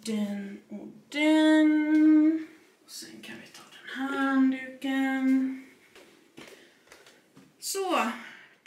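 A woman singing to herself in a few long held notes, each about a second long; the first is higher and the next two lower, and a falling note starts near the end.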